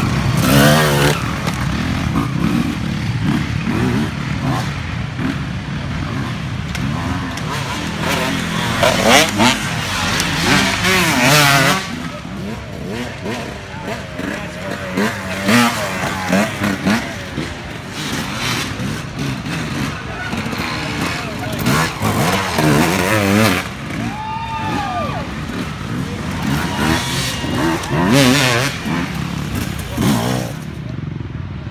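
Off-road dirt bike engines revving as several bikes ride past in turn on a dirt trail, each pass a surge of rising and falling pitch as the riders work the throttle and shift.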